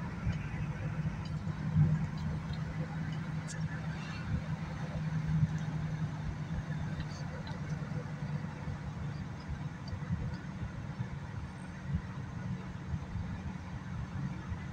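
Steady road and engine rumble inside the cabin of a moving car, with a low hum and a few faint ticks.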